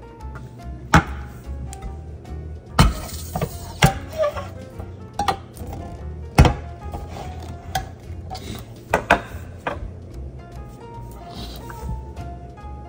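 Kitchen knife stabbed repeatedly into the lid of a metal can of sauerkraut, about eight sharp, irregularly spaced strikes, over background music.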